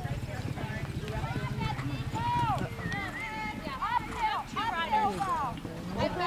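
Hoofbeats of a horse cantering on arena sand, heard under spectators' voices and chatter. A steady low hum stops a little under halfway.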